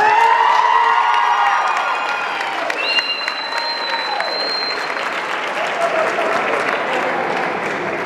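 Audience applauding and cheering for an award winner. The applause is loudest at the start and eases off slowly, with high cheers over it.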